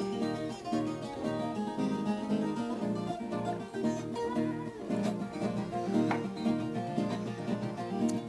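A viola caipira and a nylon-string classical guitar playing together, the instrumental opening of a sertanejo pagode before the singing comes in.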